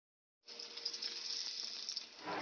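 Steady stovetop cooking hiss on a gas stove, starting suddenly about half a second in after silence.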